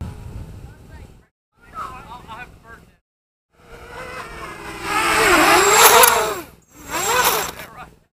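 Racing quadcopter's electric motors and propellers whining, the pitch dipping and rising with the throttle, loudest a little past the middle. The sound comes in several short bursts with abrupt cuts to silence between them.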